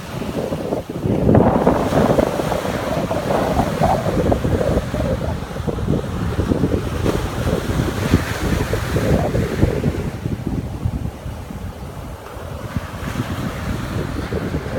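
Wind rumbling on the microphone over ocean surf breaking on a sandy beach, loudest a second or so in.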